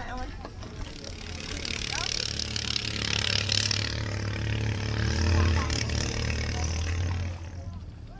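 A motor engine running steadily, growing louder to a peak a little past the middle, then dropping away about seven seconds in, with people's voices around it.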